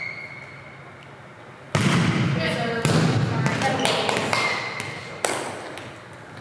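Players' voices echoing in a gymnasium, with a volleyball thudding on the hard floor. There is a short high steady tone just before a sharp thud near the end.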